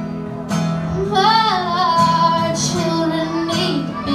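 A young girl singing long, wavering held notes over a strummed acoustic guitar.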